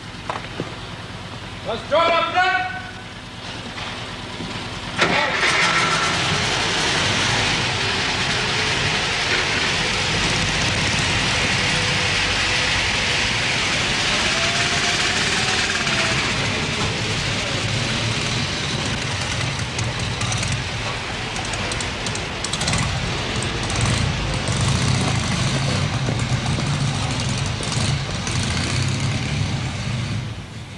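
A military lorry's engine starts suddenly about five seconds in and keeps running loudly as the vehicles drive off. A short shouted call comes about two seconds in, before the engine starts.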